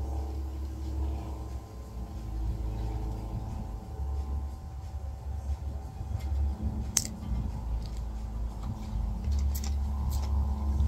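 A sharp click about seven seconds in, and a couple of smaller clicks near the end, as the plastic flip-off cap is worked off a small glass peptide vial, over a steady low rumble with a faint hum.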